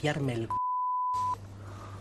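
A single steady electronic beep lasting just under a second, with all other sound cut out around it, like a censor bleep laid over an edit in the speech; a man's voice is heard before and after it.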